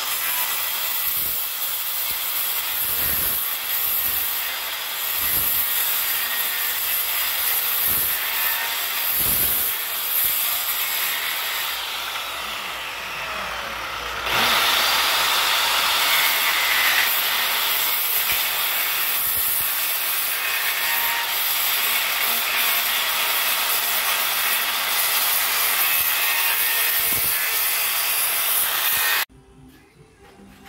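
Handheld circular saw cutting through sheet metal: a continuous, harsh, high cutting noise. It eases for a couple of seconds about halfway through, picks back up, and stops abruptly near the end.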